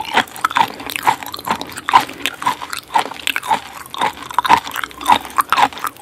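Close-miked chewing and wet mouth sounds, about two a second, of someone eating raw coconut grubs (palm weevil larvae) dressed in fish sauce.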